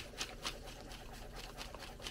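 Faint scattered ticks and rustles of small craft items being handled on a table, over a steady low room hum.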